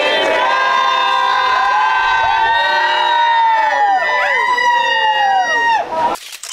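A crowd cheering a toast: many voices holding one long shout together, several sliding down in pitch as they trail off. It cuts off abruptly near the end.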